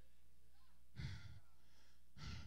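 A short, sharp breath into a handheld microphone about a second in, over a steady low hum.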